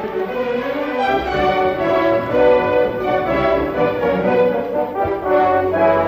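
Opera orchestra playing a sustained passage, with the brass, French horns above all, prominent.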